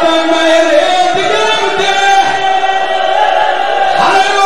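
A man chanting a zakir's mourning recitation in long, held melodic notes that bend slowly up and down, loud and without pause.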